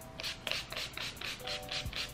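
Pump spray bottle of facial mist worked rapidly, a quick run of short hissing sprays about five a second, over soft background music.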